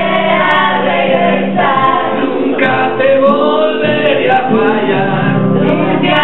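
A man singing a song in Spanish to his own acoustic guitar accompaniment, performed live through a microphone.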